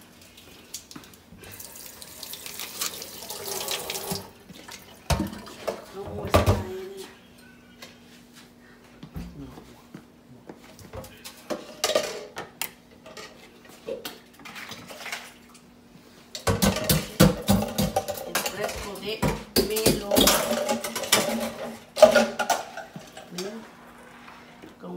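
Liquid pouring and splashing at a kitchen sink: a short run of water a couple of seconds in, then a louder stretch of splashing with knocks of a ladle against an enamel pot for several seconds near the end.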